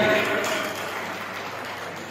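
A children's group song breaks off suddenly just after the start. A steady, even background noise of a large hall follows and slowly fades.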